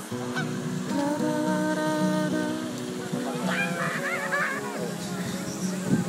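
Goose honking several times in a row about halfway through, over steady background guitar music.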